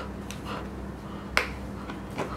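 Plastic e-collar being fastened by hand: a few faint ticks, then one sharp plastic click about a second and a half in as a tab is pushed through its slot.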